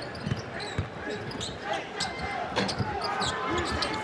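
A basketball being dribbled on a hardwood court, a bounce roughly every half second to second, over the murmur of an arena crowd.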